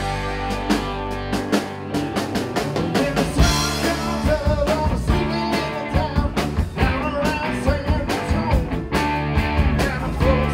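A band playing upbeat rock-style music: drum kit beating steadily under electric guitar, with a melody line running over it.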